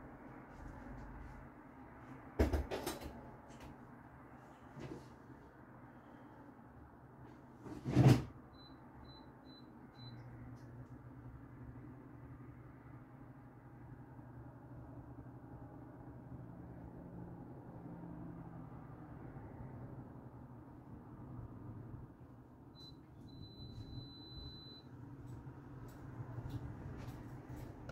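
Microwave oven being used out of shot: a door banging shut twice, four quick keypad beeps, then a low steady hum as it runs, with a short beep and a long beep of about two seconds near the end.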